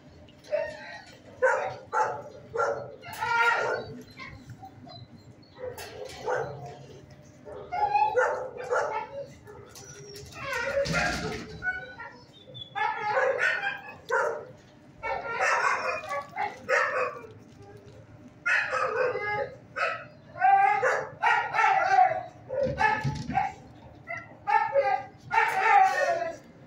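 Dogs barking in a shelter kennel: short barks in runs of two to four, with brief pauses between runs.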